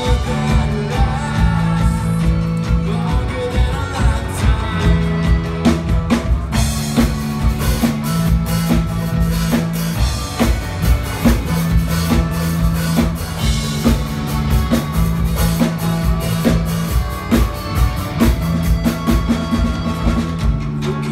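Live band playing a pop-rock song: voices singing at the start over guitar, bass and drum kit, with the drums louder and busier from about six seconds in as the band plays on.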